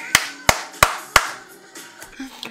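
Hands clapping hard: four sharp, evenly spaced claps, about three a second, in the first half.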